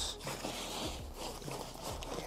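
Rustling and soft knocks of padded cricket gloves being pushed and shuffled into a fabric kit bag.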